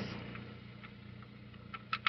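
A low steady hum, with a couple of faint metal clicks near the end as a just-removed bolt and nut are handled.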